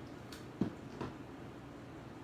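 Three light knocks and clicks of a clear acrylic stamp block and ink pad being handled on a craft table, the loudest a dull thump about half a second in.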